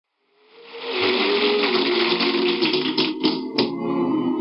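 Audience applause over sustained instrumental music, fading in during the first second. The applause dies away about three and a half seconds in while the music carries on.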